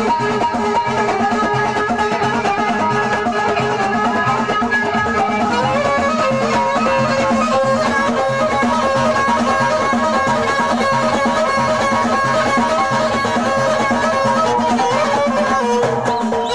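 Live Moroccan folk music: a violin, bowed while held upright on the knee, plays a sustained melody over a steady, evenly repeating hand-drum rhythm.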